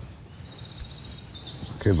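Small birds chirping with short high trills over a steady low outdoor background noise, in a pause between spoken lines; a voice says a word near the end.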